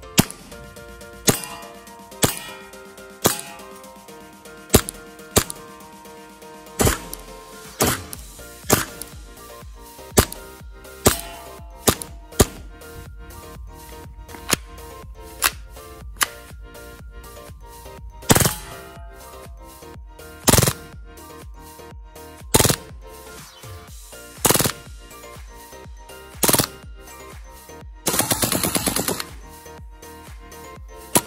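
Action Army AAP-01 gas blowback airsoft pistol firing, with its slide cycling: single shots about a second apart at first, then short bursts every couple of seconds, and near the end one longer rapid full-auto burst of just over a second. Background music plays underneath.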